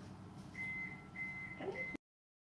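A steady high-pitched whistle, starting about half a second in and broken twice by short gaps.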